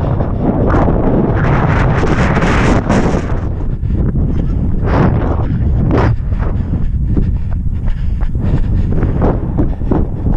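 Wind buffeting the microphone of a camera carried by a running person: a loud, steady low rumble, with a stronger, hissier gust about two to three seconds in.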